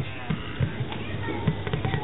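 Hands patting the hide head of a large drum, giving a few soft, low thumps at uneven spacing.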